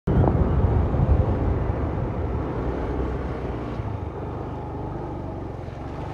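A motor vehicle engine running, a steady low hum that is loudest in the first second or so and gradually fades.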